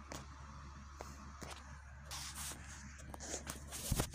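Rustling and scraping with a few sharp clicks over a steady low electrical hum, with a louder knock near the end.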